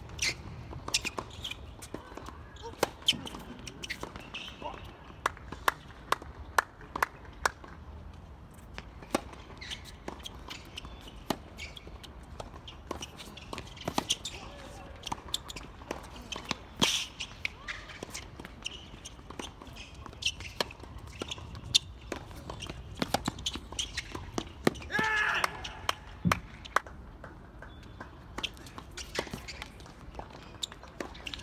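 Tennis rallies: a ball struck hard by racket strings and bouncing on the court, giving sharp pops at irregular intervals. Footsteps scuffle on the court, and a voice calls out briefly near the end.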